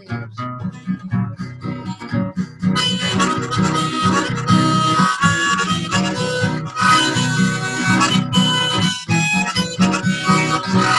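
Strummed acoustic guitar and harmonica playing an instrumental break in a country song. The guitar strums alone for the first few seconds, and the harmonica comes in about three seconds in, playing a melody over it.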